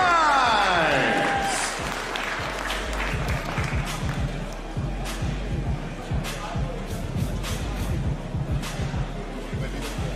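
A ring announcer's voice drawing out the end of a fighter's name in a long falling call, echoing in a hall, followed by a crowd applauding with scattered claps over background music.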